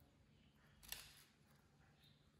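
Near silence, with a single faint click about a second in.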